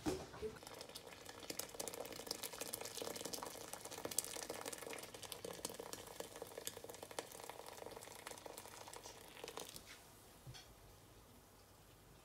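Boiling water poured from a kettle into a pan of simmering hibiscus (sorrel) leaves, a faint bubbling, splashing crackle. The pouring stops suddenly near the ten-second mark, leaving only quieter bubbling.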